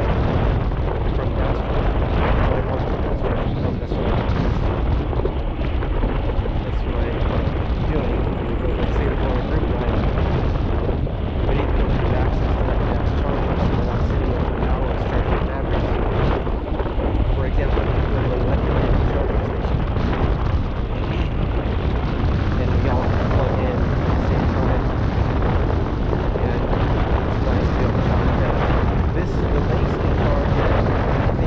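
Wind buffeting the microphone of a camera riding on a moving electric unicycle: a steady, loud rushing noise, heaviest in the low end.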